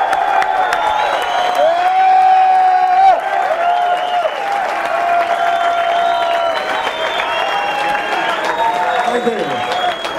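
Concert audience applauding and cheering, with many overlapping long whoops and shouts over steady clapping.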